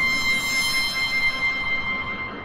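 Intro of a club dance remix: a sustained, steady high synth tone with overtones over a faint wash of noise, with no beat yet.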